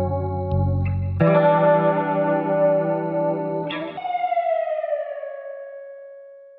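Instrumental outro of a hip-hop song: sustained chords with echo over a bass line. The bass drops out about a second in, and near the end a last chord slides down in pitch and fades away.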